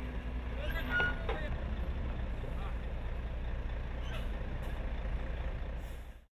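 Truck engine idling, a steady low rumble, with faint voices in the background.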